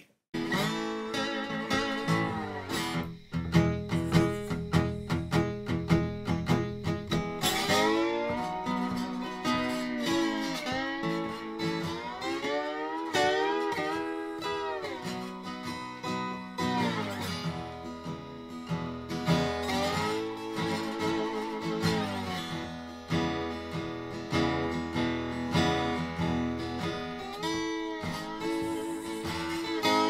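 Background blues music on acoustic slide guitar: plucked notes with the slide gliding up and down between pitches.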